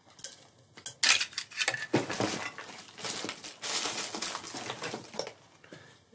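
Hard plastic parts of a Nerf blaster shell being handled: a run of light clicks and knocks with rustling in between, dying away near the end.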